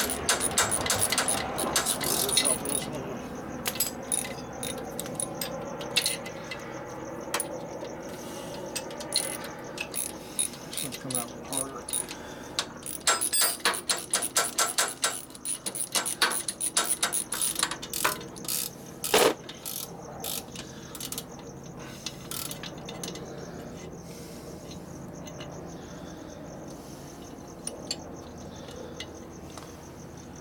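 Hand ratchet wrench clicking in quick runs, with metal tool clinks and one louder knock about two-thirds of the way through, as fasteners are worked loose on a Harley ironhead Sportster's top end.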